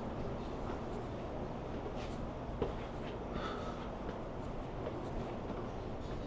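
Quiet indoor background: a steady low hum with a few faint ticks and shuffles.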